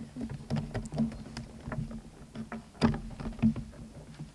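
Irregular knocks, taps and rustles of handling at a wooden lectern, picked up close by its microphone, with the loudest knock about three seconds in, over a low steady hum.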